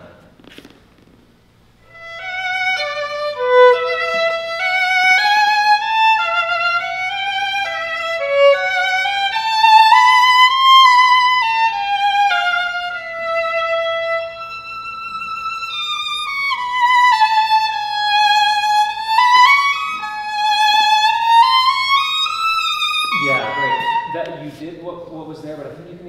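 Solo violin playing a slow, smooth phrase with vibrato on long held notes. It begins about two seconds in and rises to a high sustained note near the middle. A man's voice comes in over the last few seconds.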